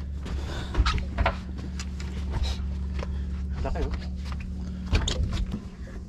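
Boat engine idling as a steady low drone, with a few sharp knocks on the deck and brief snatches of voices.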